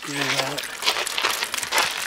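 Green engine coolant pouring in a steady stream from the drain hole of a KTM LC8 V-twin engine and splashing on concrete as the cooling system is drained. A short voiced sound from the man comes at the start.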